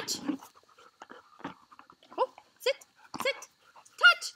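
A dog whining in short rising-and-falling calls, about four of them in the second half.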